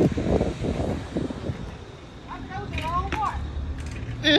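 Low, uneven rumble of wind and street noise on a phone microphone while riding a bicycle, with a faint voice briefly about two seconds in.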